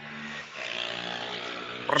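A man's voice held in one long, steady, wordless drone, ending as talk resumes.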